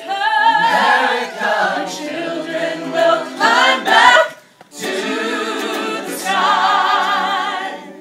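Gospel choir singing a cappella, many voices together with a strong vibrato. The singing breaks off briefly a little past halfway, resumes, and dies away near the end.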